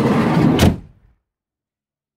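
A van's sliding side door rolling along its track for about half a second, then shutting with a single bang.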